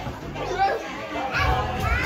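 Children's voices and chatter with music playing in the background.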